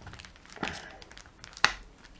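Faint clicks and scraping of steel screwdriver bits being worked out of the tight plastic holders of a Makita bit-set case, with two sharper clicks about a second apart, the louder one near the end.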